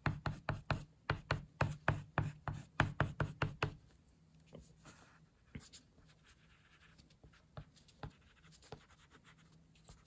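Oil pastel stick striking and scraping across paper in quick short hatching strokes, about five a second, for the first three and a half seconds. After that come only a few softer, scattered strokes.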